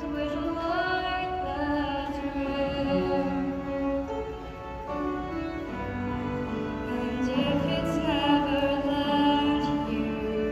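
A middle-school show choir of young voices singing a slow melody in long held notes with vibrato, accompanied by violin.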